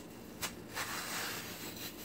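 Metal squeeze-grip melon slicer working through watermelon flesh: a light click about half a second in, then a soft scraping noise for about a second as a slice is pulled free.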